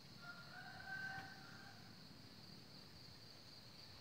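One faint, drawn-out bird call of about a second and a half, in two pitched parts that step slightly upward, over a steady high insect drone.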